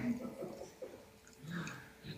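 Faint, brief bits of a voice, a few soft murmurs with short quiet gaps between them, in a small room.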